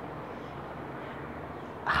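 Steady low background hiss with no distinct event; a woman's voice begins right at the end.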